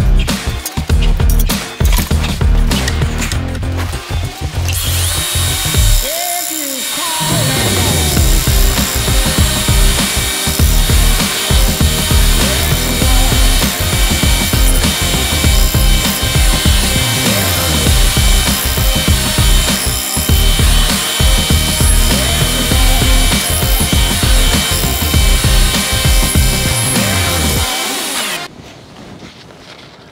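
Background music over a belt grinder grinding a small knife blade to its profile. The grinding noise comes in about five seconds in, and the sound drops away sharply near the end.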